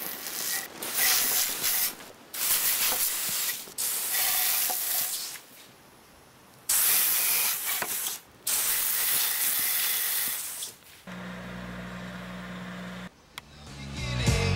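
Water spray hissing in about five bursts, each a second or two long, stopping and starting. Near the end it gives way to a steady low hum lasting about two seconds.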